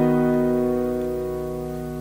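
A B-over-E♭ piano chord, with E♭ and B in the left hand and G♭, B and E♭ in the right, held and slowly dying away.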